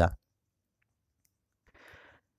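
A man's voice ends the first instant, then digital silence, and near the end a short faint intake of breath.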